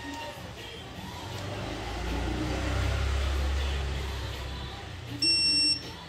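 Digital torque wrench tightening a camshaft sprocket bolt, sounding one steady electronic beep of about half a second near the end as the set torque is reached. Earlier, a low rumble swells and fades over a couple of seconds.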